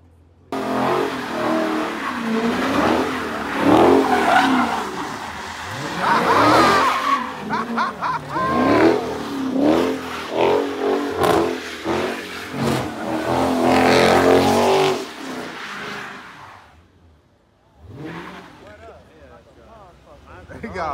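Dodge Charger doing donuts: its engine revving in repeated rises and falls while the rear tires squeal on wet asphalt. The sound starts suddenly about half a second in and drops away about sixteen seconds in.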